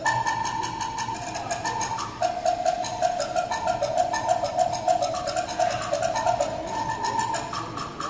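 Live band playing an instrumental passage of contemporary African jazz: a melody of held notes stepping between pitches over a steady quick percussion beat, about five strokes a second.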